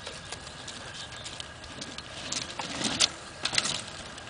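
Mountain bike rolling over a packed dirt pump track: tyres crunching on the dirt with scattered clicks and rattles, busiest a little past halfway through.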